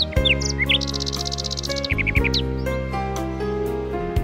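A nightingale singing over soft instrumental music with sustained chords. The bird gives whistled notes, then a fast high trill about a second in, then a quick run of notes about two seconds in.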